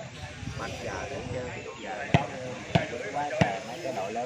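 A volleyball bounced on the hard-packed dirt court three times, about two-thirds of a second apart, over the chatter of people around the court.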